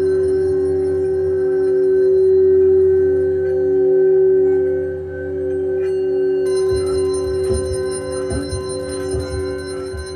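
Drone soundtrack of several sustained, ringing tones held steady, one low tone the loudest. About six and a half seconds in, higher tones join and a low, irregular pulsing starts underneath.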